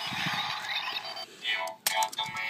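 Bandai DX NS Magphone toy's electronic sound effects played through its small speaker as both halves are switched on: a sweeping, tinny electronic noise, then a short burst of tones about a second and a half in. A plastic click near the end.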